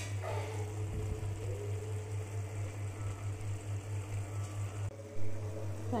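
Steady low electrical-sounding hum with a few faint steady tones above it, broken by a short louder sound about five seconds in.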